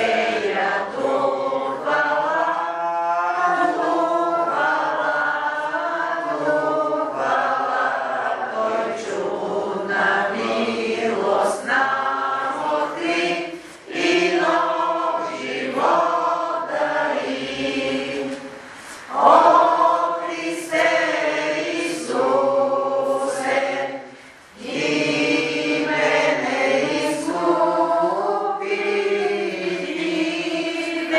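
A congregation singing a hymn together, in long phrases with short breaks between them.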